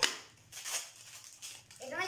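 Gift packaging being handled: a sharp snap at the start, then a brief rustle of wrappers.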